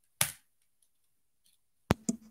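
Two sharp computer keyboard keystrokes, about a second and a half apart, as a terminal command is pasted and entered; the first is the louder.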